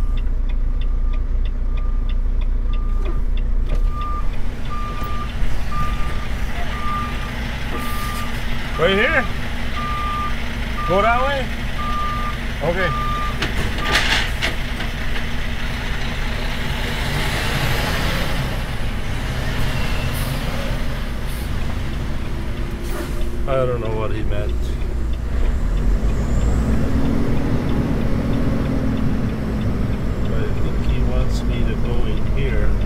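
A semi truck's reverse alarm beeping steadily, about once a second, over the diesel engine running as the rig backs up; the beeping stops about halfway through.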